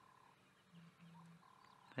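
Near silence with faint animal calls: two short low notes, one just under a second in and one straight after, and a thin steady higher tone at the start and again near the end.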